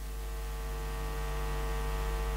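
Steady electrical mains hum with its overtones on a cassette recording, slowly growing louder, with no music or voice over it.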